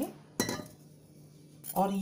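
A single metallic clink as a steel pot of warm milk is set down on the kitchen counter, ringing briefly.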